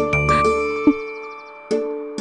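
Background music score: sustained chords with bell-like chimes ringing out and fading, and a new chord struck near the end.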